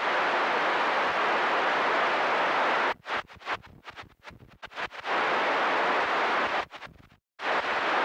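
CB radio receiver hissing with static on a skip-conditions channel, steady for about three seconds, then breaking up into choppy bursts and short dropouts as the squelch opens and shuts on a weak, fading signal. It cuts out completely for a moment shortly before the end, then the hiss returns.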